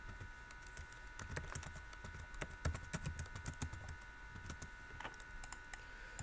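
Computer keyboard typing: faint, irregular key clicks, several a second.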